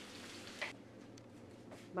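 Tomato and onion frying in olive oil in a lidded pan, giving a steady sizzle that turns quieter and duller about two-thirds of a second in.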